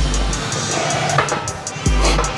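Background music with a drum-kit beat: deep bass drum hits with sharp snare and cymbal strikes over it.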